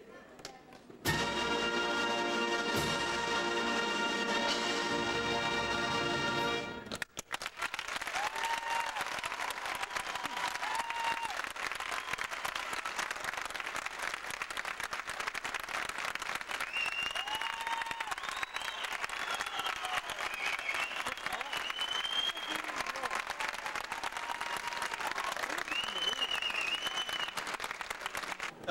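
A brass and woodwind concert band holds a sustained closing chord for about six seconds. Then an audience applauds steadily for the rest of the time, with occasional cheers and whistles.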